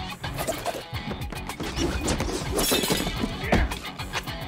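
Film fight-scene soundtrack: driving score music with a steady beat, mixed with hit effects and a crash, like something shattering, about three seconds in.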